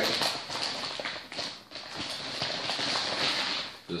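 Glossy plastic mailer bag crinkling and rustling as it is handled and opened, in uneven bursts.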